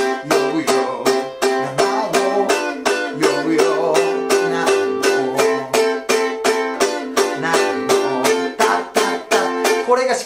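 Ukulele strummed in a steady on-beat chopping rhythm, each stroke cut short by muting the strings, about four strokes a second, moving through C, G7, Am and F chords. A man sings the melody over it.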